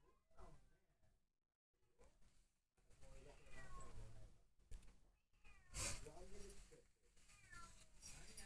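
Exotic Shorthair kitten mewing: a few short, thin calls that slide in pitch, with a single sharp knock about six seconds in.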